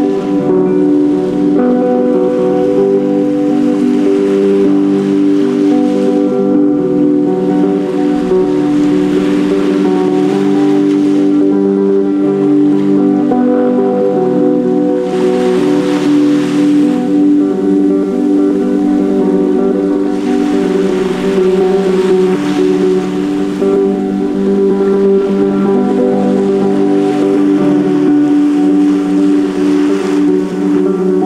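Music of long, held droning tones, with ocean surf washing underneath it and rising in a few swells.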